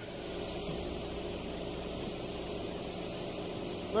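A car engine idling: a steady low hum under a hiss, with no distinct knocks or changes.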